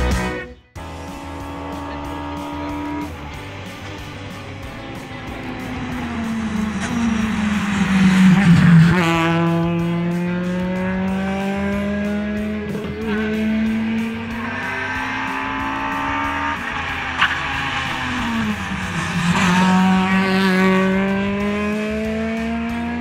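Rally car engine at full effort on a stage, its pitch falling, climbing and dipping with the car's speed and gear changes, loudest about eight to nine seconds in.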